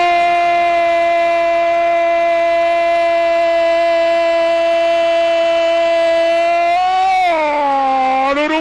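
A radio football commentator's long goal cry: one shouted note held at a steady pitch for about seven seconds, then sliding down in pitch near the end.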